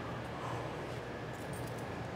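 Quiet indoor room tone: a steady low hum under a faint, even background noise, with no distinct events.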